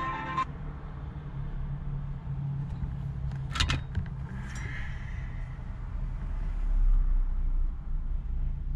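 Music cuts off about half a second in, leaving the low steady rumble of a car idling while stopped, heard from inside the cabin. A brief sharp noise comes a little past halfway, and near the end another car passes close in front, its rumble swelling and falling.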